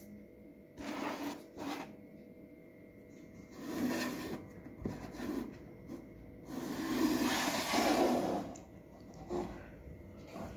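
Cardboard model-car box being handled and opened, and the acrylic display case taken out, giving rubbing and scraping noises. There are two short rustles in the first two seconds, another about four seconds in, and a longer scrape from about six and a half to eight and a half seconds.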